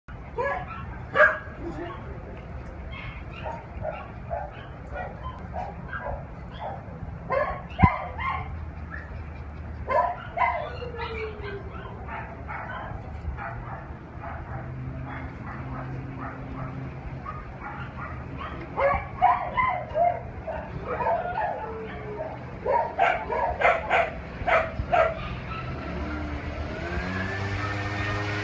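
Dogs barking in short, scattered bursts, with clusters about a second in, around a quarter and a third of the way through, and twice more in the second half, over a steady low hum.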